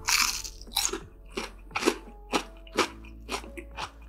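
A close-miked bite into crispy fried food, then loud crunchy chewing at about two crunches a second.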